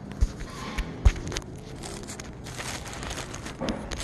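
Close handling noise as a hand works at a wire-mesh cage: two dull thumps in the first second or so, then scattered light clicks and rustling.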